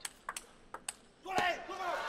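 Plastic table tennis ball clicking off rackets and table in a short, fast rally: about four sharp ticks within the first second. A voice exclaims near the end as the point is won.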